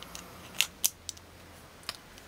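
A few sharp metal clicks as a small lock cylinder is slid into the steel housing of an FSB security window handle, the loudest just before a second in and another near the end.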